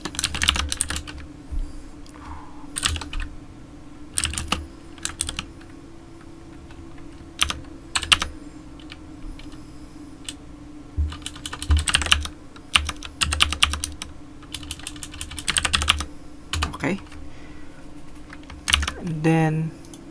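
Computer keyboard typing: short bursts of quick keystrokes separated by pauses of a second or more.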